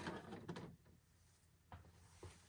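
Faint handling noises under the hood: a soft scrape and rustle in the first second, then a light click near the end.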